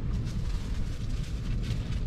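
Low, steady rumble with a hiss over it: strong wind buffeting the van and the microphone, with faint rustling of clothing.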